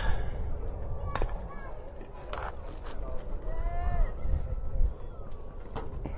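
Faint, distant voices calling out at an outdoor baseball game, with one higher drawn-out shout near the middle. A couple of faint sharp clicks sound over a steady low rumble.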